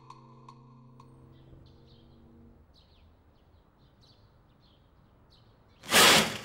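Soft piano music fades out over the first two or three seconds, leaving faint bird chirps of morning ambience. Near the end a sudden loud swish as a curtain is pulled open.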